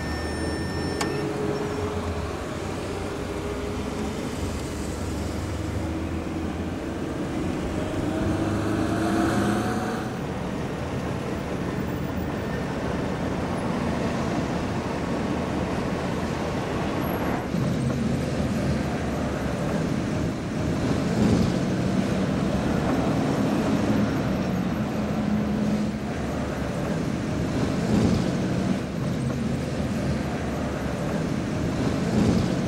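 Road traffic heard from a moving car: steady engine and tyre noise with other vehicles around it, and an engine note rising in pitch about nine seconds in.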